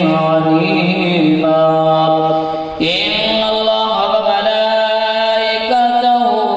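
A man chanting a naat into a microphone in long, drawn-out held notes. One phrase ends about three seconds in and the next begins with a rising note.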